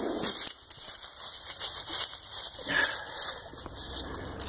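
Dry grass and dead leaves rustling and crackling in irregular bursts as they are brushed and handled.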